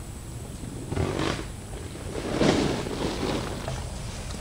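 Two hoarse, drawn-out calls from the penned livestock, a short one about a second in and a longer, louder one about two and a half seconds in.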